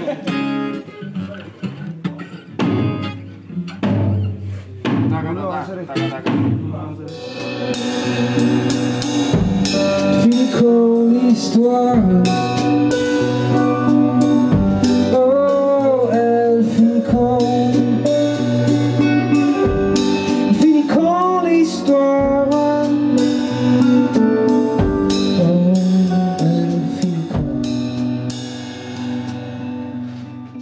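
Band music with electric guitar and drums. It is sparse at first and fills out about seven seconds in, with a low beat about every two and a half seconds and a few notes that slide in pitch.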